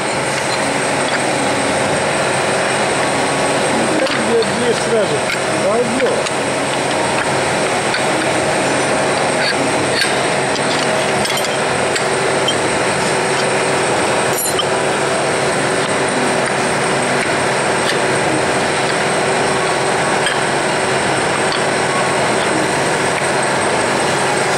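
Steady, loud drone of workshop machinery with a faint low hum, with a couple of light metallic clicks partway through.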